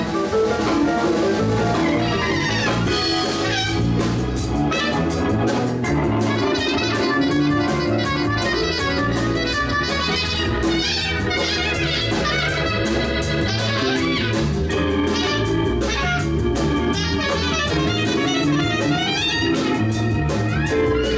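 Live band playing an instrumental passage: drum kit with steady cymbal hits, bass, electric guitar and keyboard, with a clarinet playing a wavering lead line over them.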